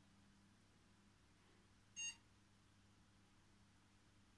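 A single short electronic beep from the PC's motherboard speaker, about two seconds in: the POST beep of an ASUS M4N68T-M LE V2 board at power-on, the sign that the power-on self-test passed. Otherwise near silence with a faint low hum.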